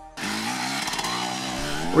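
TM EN 300 Fi fuel-injected 300cc two-stroke enduro engine revving under throttle, its pitch climbing over the first second and then holding high.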